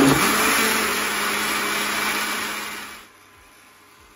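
Countertop blender motor running on mango, yogurt and milk, blending them into lassi. It runs steadily, then winds down and stops about three seconds in.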